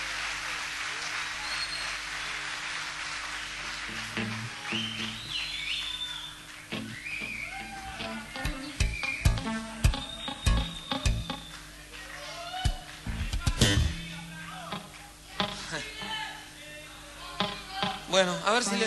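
Live concert audience applause dying away over the first few seconds, with a few whistles. Then come short held low instrument notes and scattered knocks and taps as the band gets ready for the next song.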